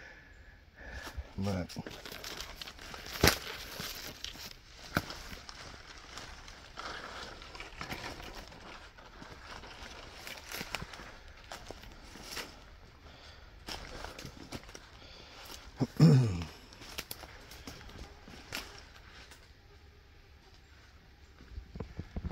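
Rustling and crackling of dry leaves and brush underfoot, with scattered clicks. About three-quarters of the way through comes one short, low grunt that falls in pitch; it is heard only once, and the listener thinks it could have been a hog.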